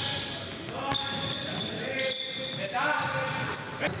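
Basketball dribbled on a hardwood gym floor, with a few sharp bounces, and sneakers squeaking in short high chirps as players cut and move on the court.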